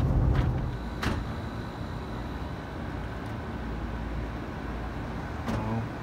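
Car cabin noise while driving on a highway, with a low rumble from the road and engine. About a second in there is a sharp click, after which a softer steady noise with a faint high tone carries on.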